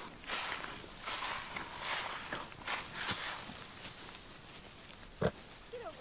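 Scuffling and rustling from goats and their kids moving close by on grass, in short irregular bursts, with one sharp knock about five seconds in.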